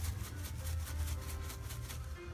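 Dried Italian herbs shaken from a spice jar over a pan of tomato sauce: a quick, even rattle of about seven shakes a second, over a steady low hum.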